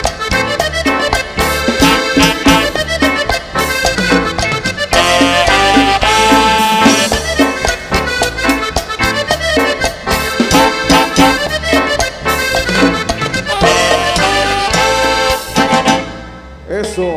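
Live Christian cumbia band playing an instrumental passage: a melodic lead over a steady percussion beat and bass.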